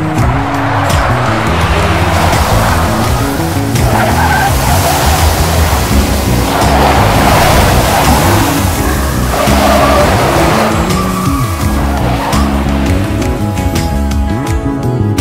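Waterfall rushing, swelling and easing in waves, under a guitar-led background song.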